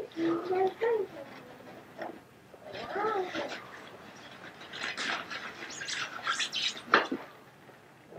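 Paper and packaging rustling and crinkling as a gift box is unpacked, busiest in the second half, with a sharp knock near the end. Short high-pitched voice sounds come in the first half.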